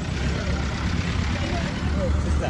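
Busy outdoor market street noise: a steady low rumble under indistinct background voices.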